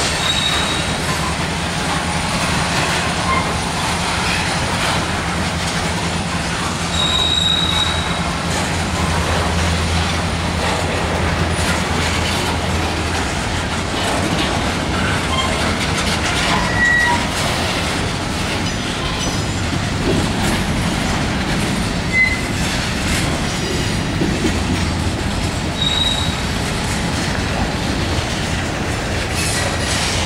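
Loaded freight cars of a slowly moving train rolling past, a steady rumble of steel wheels on rail. Several brief high-pitched wheel squeals sound through it. A low hum runs under the first half and fades out about halfway.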